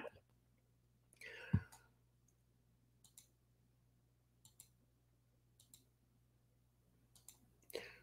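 Near silence: faint room tone with a low hum, broken by a soft breathy sound and a light thump about a second and a half in, then a few faint scattered clicks.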